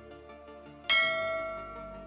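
A single bright bell-like chime strikes about a second in and rings out, fading over about a second, over quiet background music.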